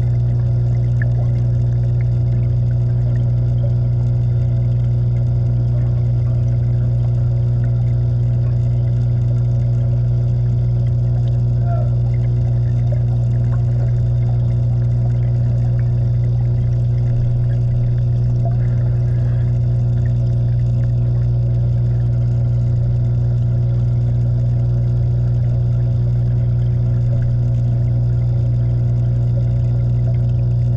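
Steady low hum of aquarium pumps, heard through the water by an underwater camera, with a hiss of moving water over it. It stays the same throughout.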